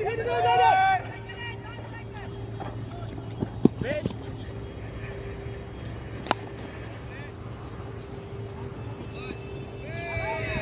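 Players shouting on the field in the first second, then a steady low hum under the open-air ambience. A sharp knock comes about three and a half seconds in, and a single crack of cricket bat on ball about six seconds in.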